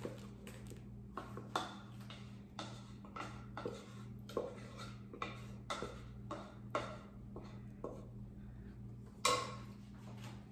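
A spoon scraping and knocking inside a saucepan as thick rice pudding is emptied into a serving dish: short knocks about twice a second, with a louder knock near the end. A steady low hum runs underneath.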